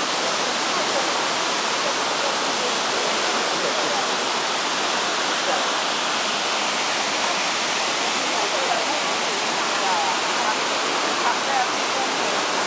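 Mountain waterfall with white water cascading over boulders, a steady, even rush of water that holds unchanged throughout.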